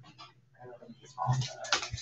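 Indistinct human voices, loudest a little over a second in.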